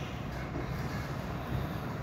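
Steady low background rumble with a faint hiss, heard between sentences of a recorded talk.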